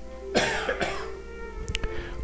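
A man coughing off-microphone, head turned aside with his fist to his mouth: one cough about a third of a second in, followed quickly by a second, smaller one.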